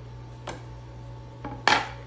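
A light tap about half a second in, then a sharp clatter near the end as a wooden cutting board and kitchen knife are set down on a granite countertop.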